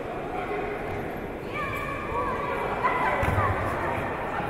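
Short shouted calls from voices in a large sports hall over a steady crowd din, with a dull thud about three seconds in as a judoka is taken down onto the tatami.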